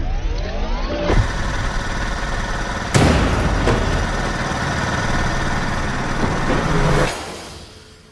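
Film-trailer sound design: a loud, dense rumble with a rising sweep in the first second and heavy hits about one, three and seven seconds in, fading away near the end.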